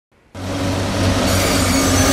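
Telehandler's diesel engine running steadily under load as it moves a full bucket of sand, with a low steady hum. It starts abruptly about a third of a second in.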